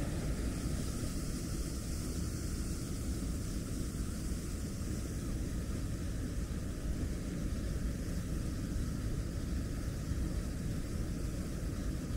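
A waterfall pouring into a rocky plunge pool: a steady, even rush of water with no break.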